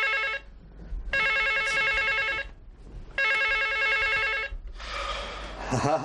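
Telephone ringing in repeated rings of just over a second each, about two seconds apart, three rings in all. The ringing then stops and a rustle follows as the corded handset is picked up.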